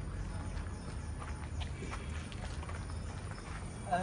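Faint, irregular footsteps on a lane over a low steady rumble.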